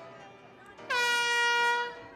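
A loud horn note, held for about a second, starting with a slight drop in pitch and bending at the end, over quieter swing dance music.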